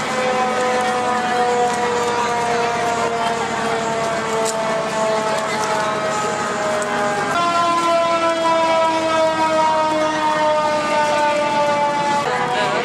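Emergency vehicle siren sounding long held tones that sag slowly in pitch, jumping back up to a higher tone about seven seconds in, over the chatter of a crowd.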